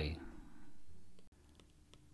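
The tail of the narrator's voice, then faint room tone with a low hum that cuts off abruptly with a click at an edit a little over a second in, leaving near silence.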